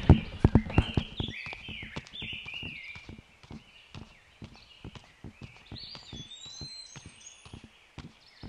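Footsteps on grass, about two a second, loudest in the first couple of seconds and fainter after. Birds chirp over them.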